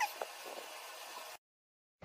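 Soft crackles and small ticks over a steady hiss as a dried peel-off face mask is pulled away from the skin, stopping abruptly about a second and a half in.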